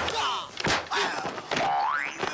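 Slapstick fight sound effects: two sharp hit sounds with short shouts between them, then a springy boing that rises steeply in pitch near the end.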